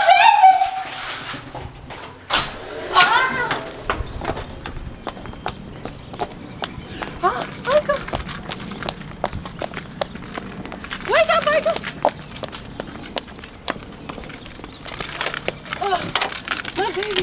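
Footsteps of a person walking quickly on hard floor and pavement, many small clicks, with short bursts of a woman's voice, exclamations or cries, at about 3, 7 and 11 seconds in.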